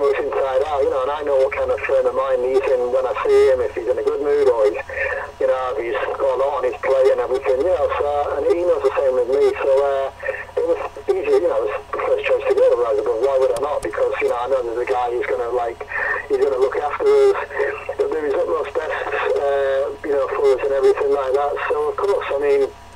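Continuous speech with a narrow, phone-like sound.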